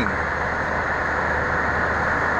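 Steady road and engine noise from inside a moving car, an even rushing hum.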